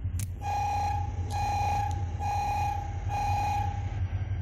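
Station platform warning beeper for an approaching train: four evenly spaced electronic beeps on one pitch, each about half a second long, over a steady low hum.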